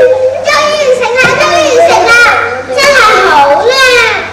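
Young children's voices, loud and continuous, with pitch that slides up and down.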